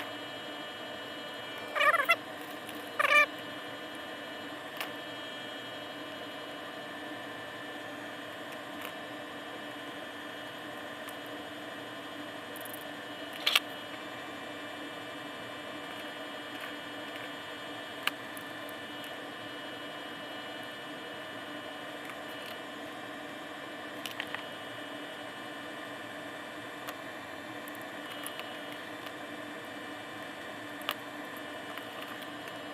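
A steady hum and hiss, with a few sparse clicks and ticks of small screws, washers and plastic frame parts being handled on a workbench, the sharpest click about 13 seconds in. Two short squeaky pitched sounds, about two and three seconds in, are the loudest things.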